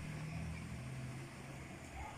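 Faint background noise with a low steady hum that fades about a second and a half in.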